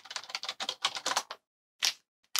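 Typing a web address on a computer keyboard: a quick run of keystrokes for about the first second and a half, then a single key press near the end.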